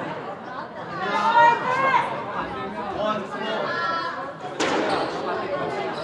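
People's voices talking in a large hall, with one sharp smack of a squash ball being struck about four and a half seconds in.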